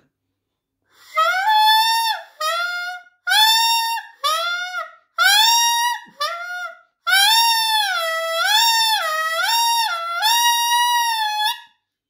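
Saxophone mouthpiece with reed blown on its own: six short, high, reedy notes that scoop up in pitch, then one long note wavering up and down like a police siren. It is the mouthpiece-only embouchure exercise for beginners.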